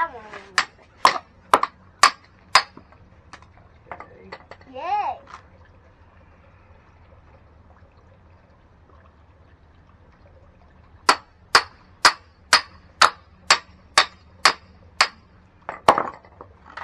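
Hammer striking the back of a hatchet head, metal on metal, driving the blade into a log to split off kindling. A run of about six sharp, ringing blows, two a second, then a pause, then about nine more at the same pace.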